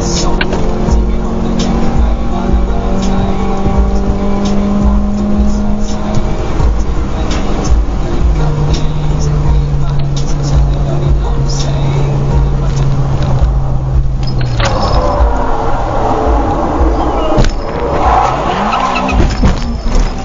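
Car cabin sound at highway speed: a steady engine drone over heavy road rumble, the drone dropping in pitch about eight seconds in. About fifteen seconds in the drone breaks off into rough noise, and a sharp knock is followed by rising and falling tyre squeal near the end as the car crashes and the dashcam is knocked loose.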